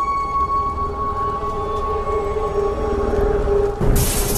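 A steady, sustained high tone over a low rumble, cut off suddenly near the end.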